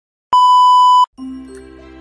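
A TV colour-bars test tone: one steady, high beep lasting under a second that cuts off abruptly. After a brief gap, music with held notes begins.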